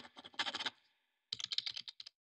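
Computer-keyboard typing sound effect: rapid clicks in two runs, the first stopping just under a second in and the second starting about half a second later.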